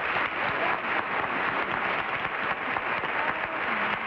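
Studio audience applauding, a steady patter of many hands clapping.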